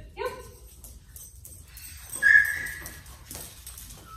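A young German Pinscher whines once, about two seconds in: a single high, steady whine lasting under a second that fades out.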